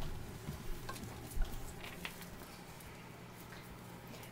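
Faint rustling and light taps as a French bulldog puppy clambers over rubber and plush toys, with one thump about one and a half seconds in and a low steady hum underneath.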